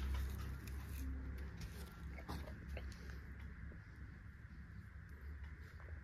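Faint rustling of rice straw and a few light clicks as the straw mushroom beds and basket are handled, over a low steady rumble.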